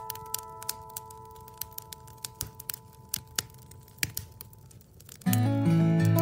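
Wood-burning stove fire crackling, with sharp irregular pops, under an acoustic guitar chord that slowly dies away. About five seconds in, the acoustic guitar starts playing again, much louder.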